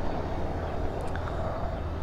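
Steady low outdoor background rumble, with a couple of faint small clicks about a second in.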